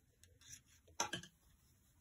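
Faint clicks and taps of metal knitting needles as stitches are slipped from one needle to another, with the loudest pair of clicks about halfway through.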